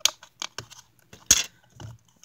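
Small clear plastic compartment box being handled and its snap lid clicked open: several sharp plastic clicks and taps, the loudest a little past halfway.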